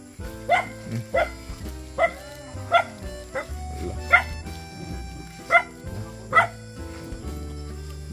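A dog barking in short, sharp barks, about eight of them, some roughly a second apart, over background music with held notes.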